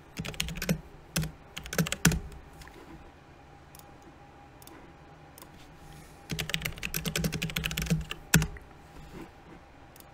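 Typing on a computer keyboard while renaming a lighting preset. A quick run of keystrokes comes first, then a few scattered taps. A second run starts about six seconds in and ends with one harder keystroke.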